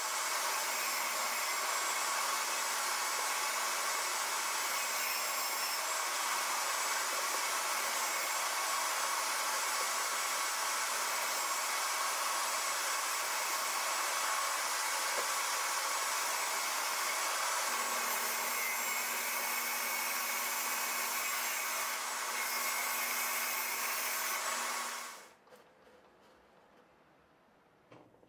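Table saw running with a steady whir while a plywood workpiece is pushed along the fence past the blade; the sound falls away about a second before the end.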